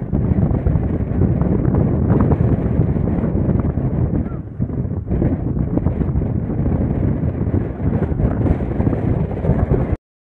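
Demolition collapse of a tall steel industrial tower: a long, loud, low rumble, mixed with wind buffeting the microphone, that cuts off suddenly at the end.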